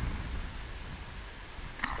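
Steady low rumble of wind on the microphone, with a faint wash of small waves on the rocks.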